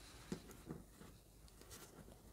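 Near silence: room tone, with a faint click about a third of a second in and a weaker one shortly after.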